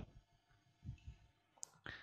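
Near silence: room tone with a few faint clicks of a marker on a whiteboard, the sharpest about one and a half seconds in.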